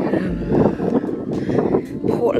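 Wind buffeting the camera microphone, with a stronger low gust about half a second in.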